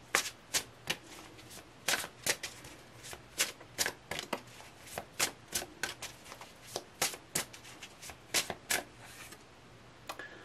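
A deck of tarot cards shuffled by hand, an irregular run of sharp card slaps, two or three a second, stopping about a second before the end.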